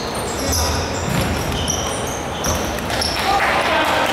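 Basketball game on a hardwood court: sneakers squeaking in short high chirps, the ball bouncing with dull thuds, and players' voices calling out.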